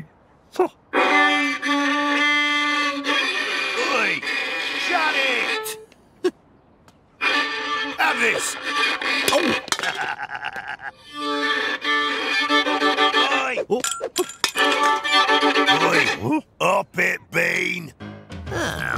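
Violin playing a tune, stopping briefly twice, with sliding notes and wordless vocal noises over it.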